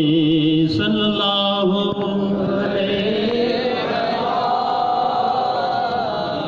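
A man's voice chanting devotional verses in praise of Muhammad into a microphone over a PA, in long held notes with wavering ornaments.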